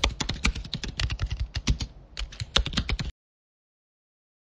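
Computer keyboard typing sound effect: rapid, irregular key clicks that stop abruptly about three seconds in.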